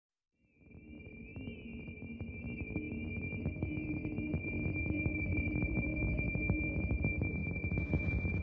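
Electronic ambient intro of a rebetiko-influenced song. A sampled drone with a steady high whistling tone and a crackling, clicking texture fades in from silence about half a second in and swells slowly over a few held low notes.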